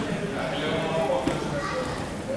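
People's voices talking, with a single knock a little after a second in.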